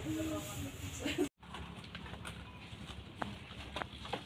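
Indistinct background voices of shoppers and staff in a small shop. The sound drops out for a moment about a second in, then a quieter shop background follows with a few short clicks.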